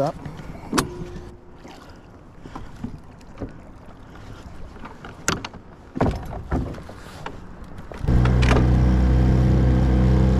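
A few knocks and clunks as the bow trolling motor is lifted and stowed. Then, about eight seconds in, the small outboard motor suddenly comes up to a loud steady drone as the boat gets under way.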